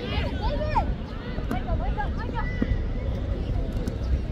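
High-pitched shouts and calls of young football players, several voices overlapping across the pitch, over a steady low rumble.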